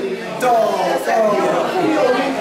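Several people talking at once: indistinct overlapping voices.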